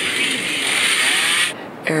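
A steady hissing rush that cuts off abruptly about a second and a half in.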